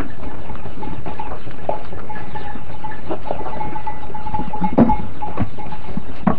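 Goats bleating: a long, steady, drawn-out call in several stretches, with a few short knocks mixed in.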